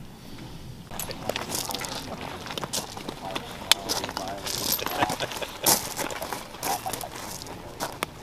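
A tan combat boot being laced up by hand: irregular rustles and sharp clicks as the laces are pulled through the eyelets and drawn tight.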